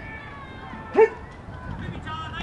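A single short, sharp call rings out loud and close about a second in, rising quickly in pitch, over faint voices calling across the field.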